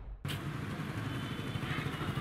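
Steady outdoor background noise with a low rumble, starting after a brief gap about a quarter second in.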